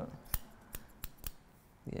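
Barber's hair-cutting scissors snipping through hair: several crisp, separate snips in the first second and a half.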